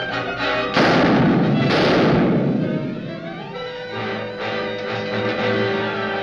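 Two dynamite blasts about a second apart, a loud burst of noise each time that rumbles away over a couple of seconds, over a dramatic orchestral film score that carries on after them.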